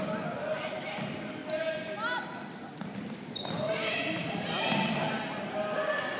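Sounds of a basketball game in a large gym: the ball bouncing on the hardwood court, short squeaks and players' voices calling out, all echoing in the hall.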